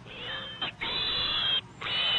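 Pigs squealing twice: a shrill squeal of about a second and a half, then a second one starting near the end.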